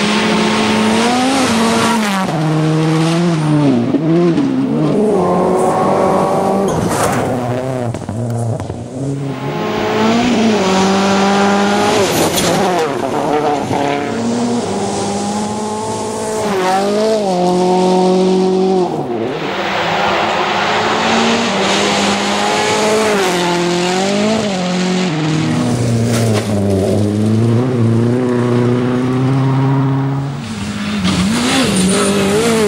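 Rally cars on a gravel special stage passing one after another, engines revving hard through the gears. The pitch climbs and drops with each shift, over and over.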